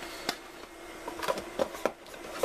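White cardboard packaging insert being handled and set back into its box: a few light taps and scrapes of cardboard.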